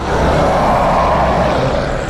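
Loud, rough snarling roar from werewolves, a creature sound effect, holding steady and easing slightly near the end.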